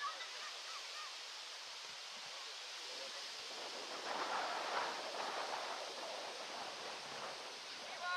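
Steady outdoor hiss on the microphone, with distant shouts from players on the pitch. The shouting swells into a louder burst of several voices about four seconds in.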